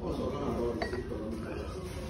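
A single sharp clink of tableware about a second in, ringing briefly, over indistinct voices in the background.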